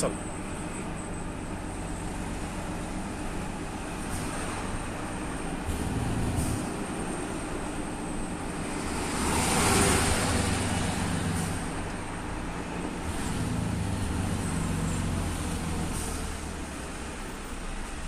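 Heavy lorry's diesel engine running at low speed, heard from inside the cab, with the drone rising and falling gently as it moves through traffic. About ten seconds in, a louder rushing swell as another large truck passes close alongside.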